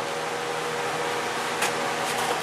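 Steady, even hiss with a faint hum, like a fan or ventilation running in a small room, and one brief soft tick about one and a half seconds in.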